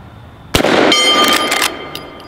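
A single shot from a Marlin 1894 lever-action rifle in .45 Colt, about half a second in. It is followed a moment later by a steel target ringing with several clear tones for just under a second.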